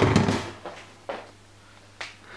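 A sudden knock and rustle of objects being handled, fading within about half a second, followed by a few faint rustles and a low steady hum.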